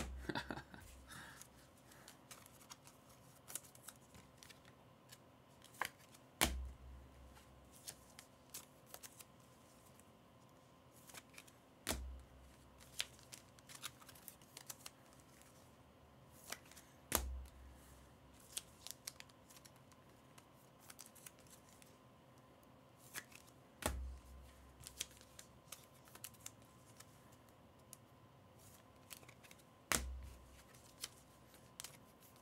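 Faint handling of trading cards and plastic card holders: small clicks and rustles as cards are slid into toploaders, with a sharper tap and low thud against the table about every six seconds.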